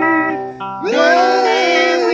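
Electric guitar played through a small combo amp: long sustained notes with wide vibrato. A short dip about half a second in, then a note bent upward and held, bending again near the end.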